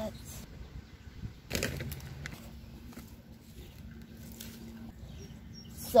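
Gloved hand pressing and working loose garden soil around a rose bush, with one short scraping rustle about a second and a half in.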